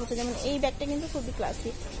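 A woman talking, with sharp hissing sibilants.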